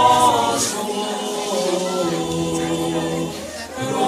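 Male vocal quartet singing a cappella, holding long notes over a low bass part, with a short dip just before the end as the phrase closes.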